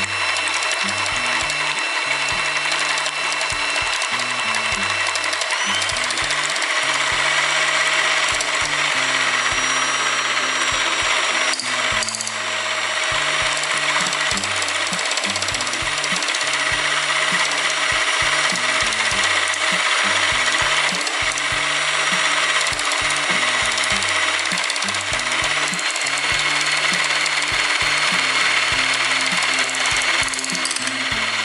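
Electric hand mixer running steadily, its wire beaters whipping an egg white into a foamy meringue in a mixing bowl, with a motor whine and the beaters' rattle. The whine shifts in pitch a few times, and there is a brief click about twelve seconds in.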